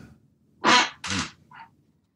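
A person's short, breathy laugh: two strong bursts and a faint third, with no words.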